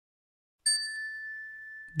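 A single bright chime ding, starting suddenly about half a second in, then ringing on as one steady high tone that fades slowly.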